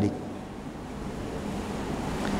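Steady rushing background noise, like hiss or air, that slowly grows louder during a pause in speech.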